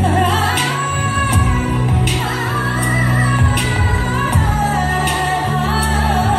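Song sung by a woman, her melody gliding between notes over a steady bass line with occasional percussion hits, accompanying a stage dance.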